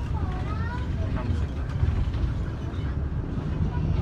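Safari tour bus on the move, heard from inside the cabin: a steady low rumble of engine and road noise, with faint passenger voices in the first second or so.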